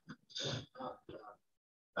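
A person's voice making a few soft, short vocal sounds, like quiet mumbled words or a throat clear, over the first second and a half, then dead silence.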